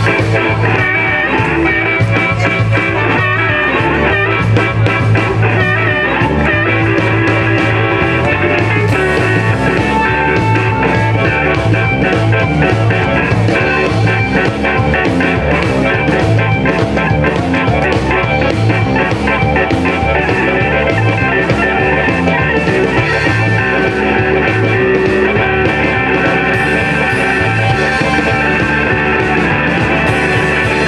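Live blues band playing an instrumental passage: electric guitars, bass and drum kit at a steady beat, with a harmonica played into a cupped microphone.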